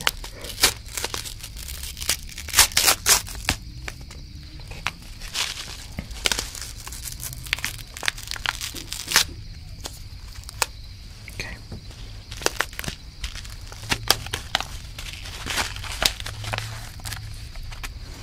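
A foil-lined Pop Rocks candy packet being crinkled and torn open by hand: a long run of irregular crackles and sharp tearing rips.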